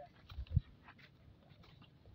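Faint scattered clicks and rustles with one low thump about half a second in: handling noise from a hand-held phone camera as it is swung round.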